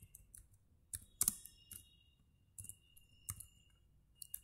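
Computer keyboard being typed on: a handful of separate, irregular keystrokes as a short terminal command is entered.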